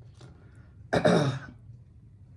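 A woman clears her throat with one short cough about a second in.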